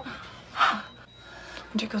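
A woman's sharp, startled gasp about half a second in.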